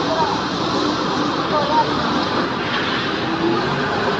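Komatsu FD70 diesel forklift running as it drives along, a steady engine din, with voices in the background.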